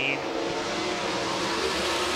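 A pack of winged sprint cars' 410 V8 engines running together at speed just after the green flag, blending into one steady, even drone.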